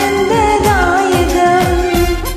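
A woman singing a Malayalam Christian devotional song over a karaoke backing track, with drum strokes that drop in pitch; her line ends near the end.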